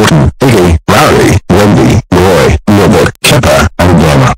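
A loud, distorted voice yelling in rage in short repeated bursts, about two a second, pushed to full volume.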